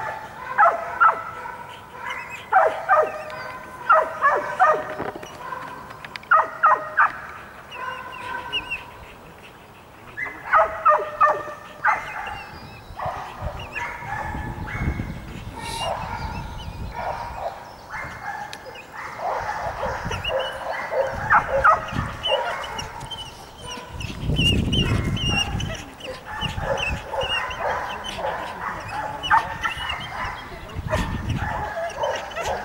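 Dog barking in repeated bursts of several quick barks, with short pauses between the bursts.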